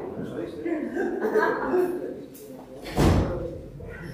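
Low, indistinct talking, then a single heavy thump about three seconds in, echoing briefly in the room.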